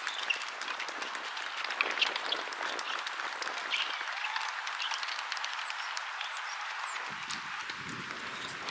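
Spectators applauding: many scattered hand claps, fairly light and continuing steadily.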